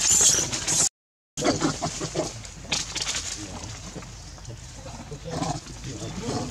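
Baby macaque screeching in a loud, shrill burst at the start, then the sound cuts out for about half a second, followed by more squeals and short calls.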